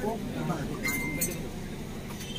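Metal clinking about a second in as a hanging brass oil lamp is handled: two light strikes and a short, high ringing note.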